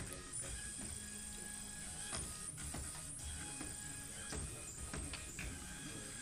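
Small micromouse robot's electric drive motors whining faintly as it runs through the maze, several thin steady tones that shift and break off as it moves, with a few light clicks.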